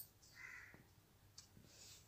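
Faint metal spoon clicking and scraping against a steel pan as chopped vegetables are stirred: a sharp click right at the start, a short scrape about half a second in, and another small click a little past the middle.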